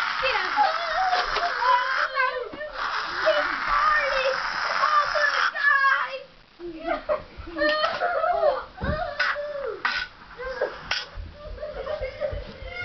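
Children's high-pitched shouts and squeals without clear words, with harsh noisy stretches in the first half and several sharp knocks in the second half.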